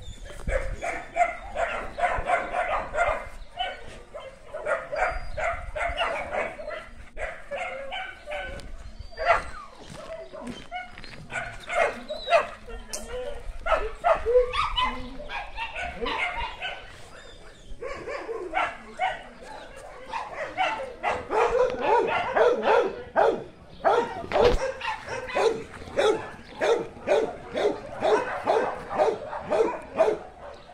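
A pack of dogs barking repeatedly, short barks following one another in quick runs, with a lull about two-thirds of the way in before the barking picks up again, busier than before.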